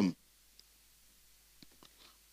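Near silence in a pause between spoken sentences, broken by a few faint, short clicks: one about half a second in and two close together near the end.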